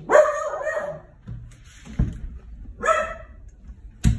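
Penned dog barking twice: a drawn-out bark right at the start and a shorter one about three seconds in, with a brief thump between them.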